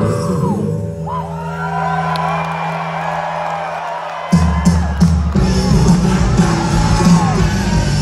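Live rock band on stage, guitars holding a sustained chord while the audience whoops and yells, then the full band with drums and bass kicks back in loudly about four seconds in.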